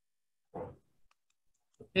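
Faint clicks of a marker tip on a whiteboard during writing, with one brief soft voice sound about half a second in.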